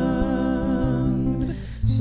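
A woman singing a long held note to acoustic guitar accompaniment. The note fades about three quarters of the way through, and a breath is taken before the next phrase.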